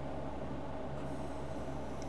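Steady low hum with a faint hiss: background room tone, with no distinct event.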